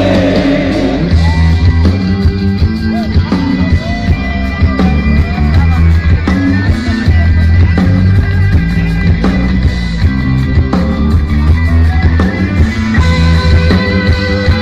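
Loud live rock band music with electric guitars, bass and drums, heard from within the audience.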